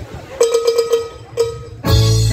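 Live wedding band starting a song: a quick run of short pitched percussion taps and one more tap, then the electronic keyboard and bass guitar come in together, loudly, near the end.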